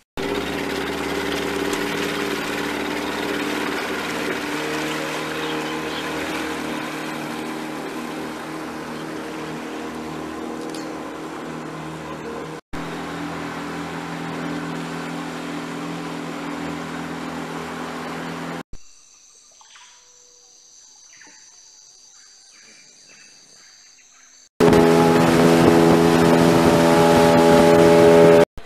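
A motorboat's engine runs with a steady drone, broken by cuts. For about six seconds in the second half it gives way to a quieter stretch of steady high-pitched tones. Near the end the engine is loud again as the boat runs fast across open water.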